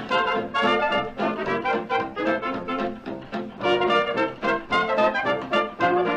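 A 1930s dance orchestra playing an instrumental, its trumpets and trombones in rapid, short notes, on a 1934 radio broadcast recording.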